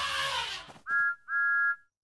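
A cartoon steam engine's whistle gives two short toots, each sliding up in pitch as it starts. Before the toots, a hiss fades out.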